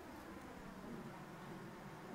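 Faint, steady room noise with a low hum and a couple of very faint ticks early on; no scissor snips.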